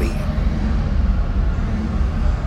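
Steady low rumble with a faint hum running underneath, unchanging throughout.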